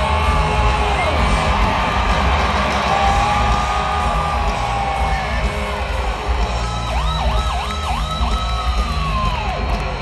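Live rock band on an amphitheatre PA: an electric guitar plays long bent lead notes, with a quick run of up-and-down pitch swoops about seven seconds in, over a heavy drum and bass rumble. The crowd yells and whoops.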